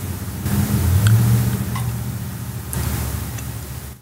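A low rumble that swells about a second in and fades toward the end, with a few faint clicks over it.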